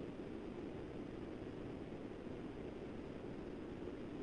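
Steady low hiss of background room noise picked up by an open microphone on a video call.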